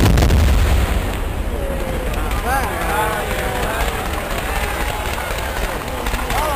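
Aerial firework shells in a pyrotechnic display: a loud burst right at the start with a low rolling boom, followed by a dense crackle of small reports and further bursts.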